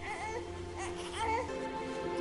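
A newborn baby crying in two short, wavering wails over steady background music.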